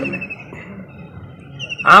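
A bird's rapid, high-pitched trill continues faintly through a short pause in a man's speech. He starts speaking again loudly near the end.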